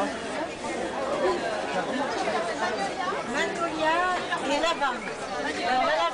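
Speech only: several people chatting, with voices overlapping.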